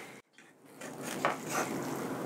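A white spatula stirring and scraping through cooked rice in a cast iron skillet, faint irregular scuffs as the rice is fluffed. The sound begins after a brief silence just after the start.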